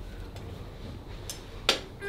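A single sharp crack near the end over quiet room tone, as the arm is drawn behind the back in a frozen-shoulder manipulation: a shoulder joint popping.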